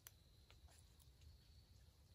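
Near silence outdoors, with a few faint ticks about half a second apart.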